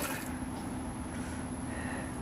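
Garden-hose water spraying into a plastic kiddie pool cuts off just after the start, leaving the steady low hum of a large drum fan running.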